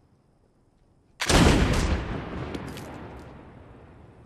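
A single pistol shot about a second in, sudden and loud, its echo dying away over the next two seconds.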